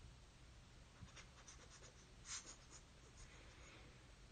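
Near silence: room tone with a few faint, soft clicks and scratches, the clearest a little past halfway.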